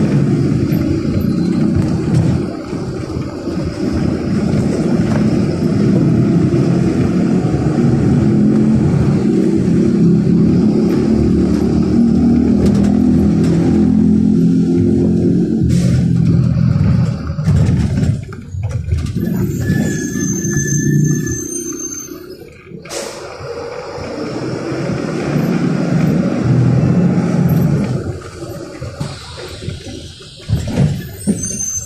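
Engine and drivetrain of a Mercedes-Benz 1570 city bus, heard from on board as it drives through town, the engine pitch rising and falling with speed and gears. About two-thirds of the way in it eases off and slows, with a brief high squeal. Then it builds up again as the bus pulls on.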